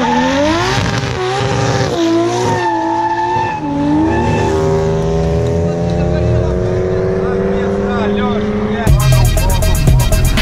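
Drift car engines revving hard, the pitch swinging up and down, then one long steady climb as a car pulls through a slide. The engine gives way abruptly to music about nine seconds in.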